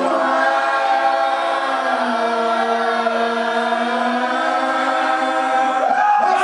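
Several voices singing together in long, held notes that change pitch every second or two, with no drums or bass heard under them.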